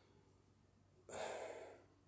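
A man's audible breath, about a second in, lasting under a second and fading, during a pause in his talk; otherwise quiet room tone.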